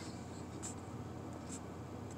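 Quiet car-cabin room tone, a faint steady hiss, with a couple of soft faint clicks.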